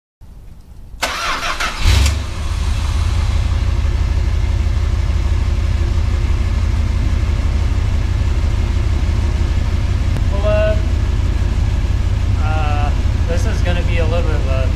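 1964 Dodge Custom 880's V8 cranking and catching about two seconds in, then settling into a steady idle.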